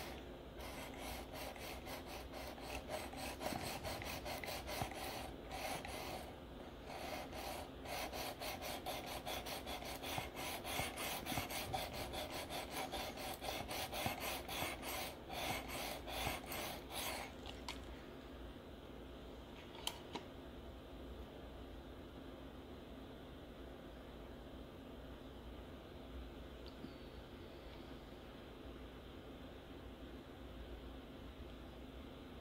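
Coarse Venev diamond sharpening stone rubbed in quick back-and-forth strokes along a steel knife edge, a gritty rasping with a couple of short pauses. The strokes stop a little past halfway, followed by one small click.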